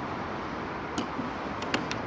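Sharp clicks from a Hobie Tandem Island's outrigger arm being swung out on its pivot: one click about a second in and two quick clicks near the end, over a steady outdoor background hiss.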